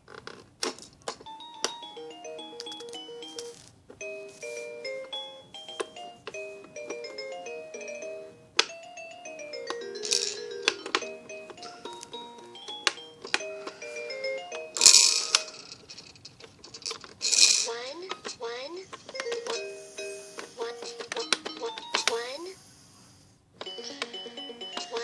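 Baby Einstein Count & Compose Piano toy playing a tinny electronic melody of short, stepped chime-like notes, with many clicks and a few short, loud, hissing bursts of sound partway through.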